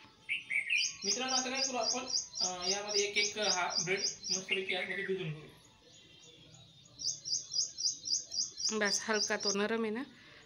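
A small bird chirping rapidly, a short high chirp about four or five times a second, in two runs with a brief pause between them.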